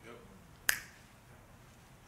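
A single sharp click about two-thirds of a second into a quiet pause, with a faint trace of a man's voice just before it.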